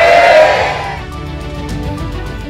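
A crowd calling back "baik" together in the first second, over background music that then carries on alone at a lower level.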